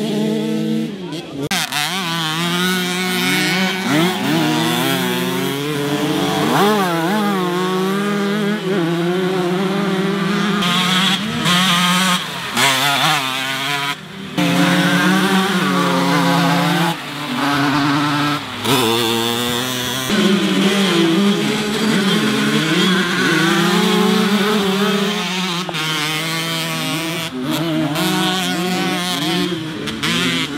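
Several small two-stroke moped (Mofa) engines racing on a muddy dirt track, buzzing and revving up and down as the bikes pass, with the sound changing abruptly several times.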